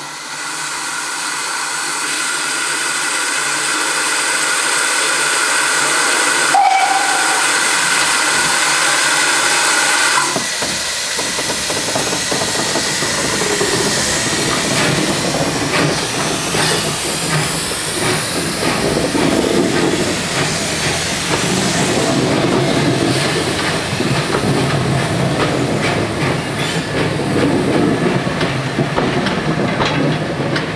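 GWR 64xx pannier tank locomotive hissing steam steadily for about ten seconds, with a brief higher note about six seconds in. It then gets under way, and irregular beats and escaping steam mix with the rumble of auto coaches rolling past.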